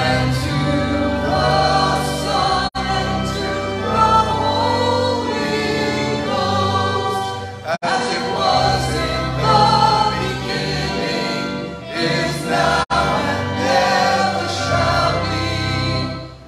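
Choir singing with sustained notes. The sound cuts out for an instant three times, about 3, 8 and 13 seconds in.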